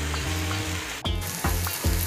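Shredded cabbage masala sizzling in a metal pan while a metal spoon stirs it, with short scrapes against the pan a few times a second and a brief break about halfway. The mixture is being cooked until its water dries off.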